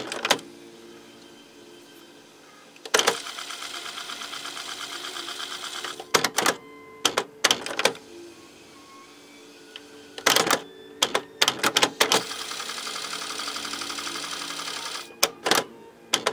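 The cassette transport of a Sony CMT-NEZ30 micro stereo, running with its door off. It clunks and clicks as it switches modes, and twice whirs steadily for about three seconds as the tape winds at speed. Each whirring stretch ends in another burst of clunks.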